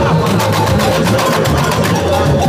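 Samba school bateria playing: a dense, fast rattle of snare drums and shakers over the deep beat of surdo bass drums.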